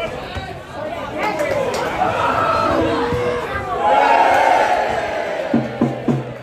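Football crowd in the stands shouting and chanting, with single voices calling out over the noise. It swells to a loud sustained shout about four seconds in.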